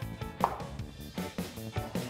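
Chef's knife chopping onion and carrot on a plastic cutting board, several quick strokes, under steady background music.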